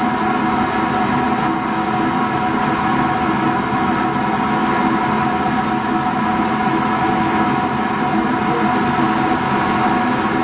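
Laser cutter running with its fume extraction system on: a steady mechanical hum with several constant tones that doesn't change.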